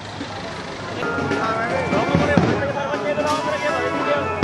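Crowd of many voices talking at once over music, growing louder about a second in.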